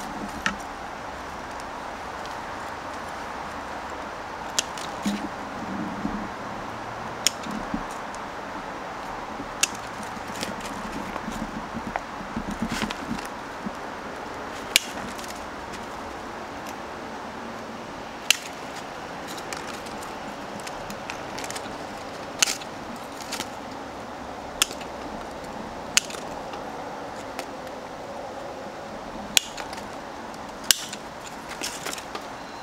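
Spring-loaded bonsai pruning scissors snipping Lebanon cedar twigs: sharp, short snips at an irregular pace, one every one to four seconds, over a steady background hiss.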